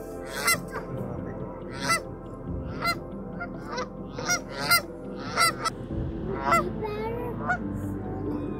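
A flock of Canada geese honking: about ten short honks, irregularly spaced, some in quick pairs.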